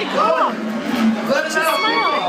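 A man's voice calling out loudly in drawn-out, sliding exclamations.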